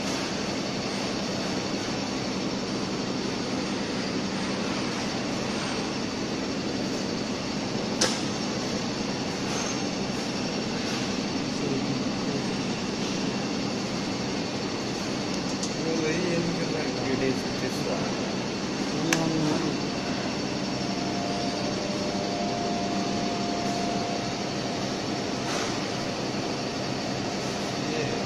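Steady hum of running machinery, with two sharp clicks about eight seconds in and again near twenty seconds as wires are handled and connected.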